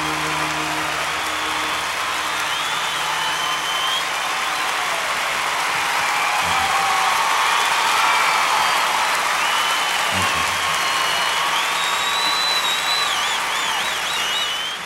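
Concert audience applauding and cheering, with several shrill whistles, as the band's last held chord dies away in the first couple of seconds.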